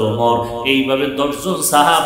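A man preaching into a microphone in a chanted, sing-song delivery, his voice holding pitches in long drawn-out phrases.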